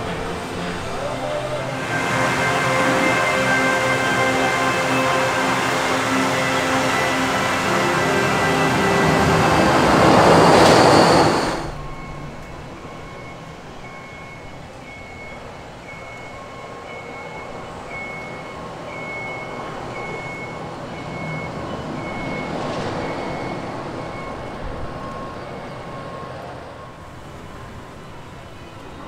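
Outdoor theme-park area music over a steady background hum, swelling into a loud rushing sound that cuts off abruptly about twelve seconds in. After that, quieter outdoor ambience with a short high note repeating about one and a half times a second.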